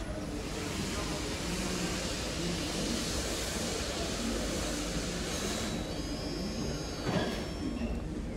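Rushing noise of an OTIS GeN2 lift car travelling in its shaft behind closed landing doors, swelling and then fading over about five seconds. A few faint high steady tones follow, with a single knock near the end.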